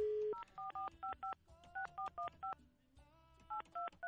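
A brief dial tone, then touch-tone (DTMF) keypad beeps as a phone number is dialled, about a dozen digits in quick groups with short pauses. This is a redial of a number that had not answered.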